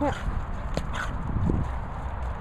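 Two Boston Terriers scuffling and running on grass: paws thudding and scrabbling, with a couple of sharp clicks about a second in, over a steady low rumble. A short voiced sound at the very start.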